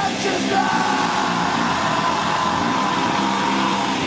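Heavy metal band playing live, the singer holding one long, high, shouted note over the band.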